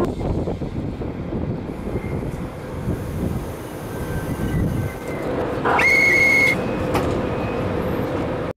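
Train running noise heard from inside a passenger coach, a steady rumble. About six seconds in, a brief high-pitched whistle-like tone rises quickly and holds for under a second before cutting off.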